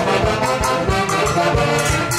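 Latin dance band playing, brass holding notes over a steady beat.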